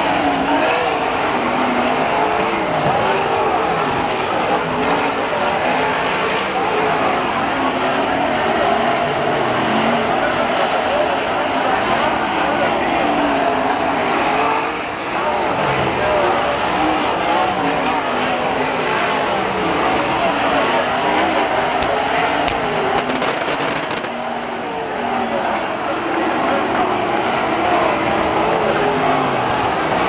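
Winged sprint cars racing on a dirt oval, their V8 engines revving up and down as they lap, with short dips in the noise about halfway through and again later.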